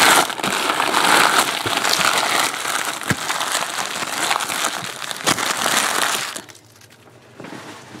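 A bundle of empty trading card pack wrappers being crushed and crumpled by hand: loud, dense crinkling that stops about six seconds in.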